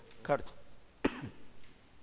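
A single sharp cough about a second in, just after a brief voiced sound from the same person.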